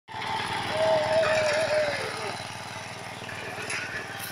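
A small engine running steadily, its firing heard as an even, rapid pulse. A wavering high tone sounds over it for about a second in the first half.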